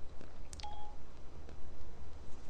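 A brief electronic beep about half a second in, over a steady low electrical hum.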